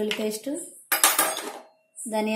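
A small stainless-steel spice cup clinks once, sharply, about a second in, and rings briefly. This comes after a short pitched, wavering sound in the first half-second.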